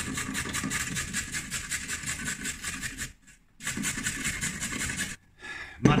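Carrot being grated on the coarse holes of a flat grater held over a glass bowl: quick, rhythmic scraping strokes, with a short pause about three seconds in, stopping shortly before the end.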